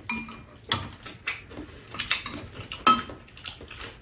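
Metal spoons clinking and scraping against ceramic bowls as two people eat, with several short sharp clinks spread through, a few ringing briefly.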